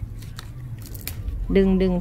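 Crisp napa cabbage leaf stalks cracking and tearing as a lower leaf is snapped off the plant by hand, a few short sharp cracks in the first second, with leaf rustle.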